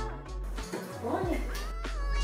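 A cat meowing about a second in, over background music.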